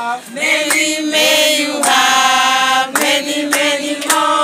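A group of voices singing together in long held notes, with a few sharp short strokes between phrases.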